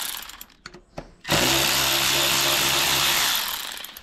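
Power drill spinning a 5/16-inch socket on an extension to back out the small bolts holding the outboard water pump's top cover. Its run stops right at the start, a couple of clicks sound in a brief lull, then the drill spins up again about a second in, runs steadily and winds down near the end.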